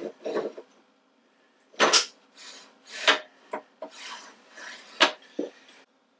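Steel parts of a drill press head being fitted together: the splined pulley sleeve and its ball bearing pushed down into the cast-iron head, giving a handful of sharp metallic clicks and knocks with rubbing scrapes between them as the spline is worked onto its teeth.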